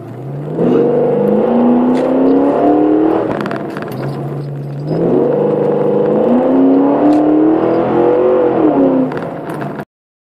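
Ford AU II LTD's 5.6-litre V8 accelerating hard in first gear, heard inside the cabin. The engine note climbs steadily for about three seconds, eases back, then climbs again for a longer pull before falling away just before the sound cuts off.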